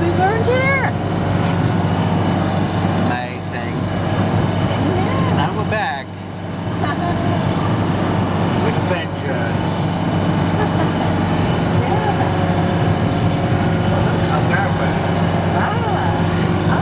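Campervan engine and road noise heard inside the cab while driving on an open road, a steady loud drone, with voices talking now and then over it.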